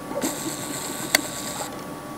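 A video camera's zoom motor whirring for about a second and a half, with one sharp click partway through.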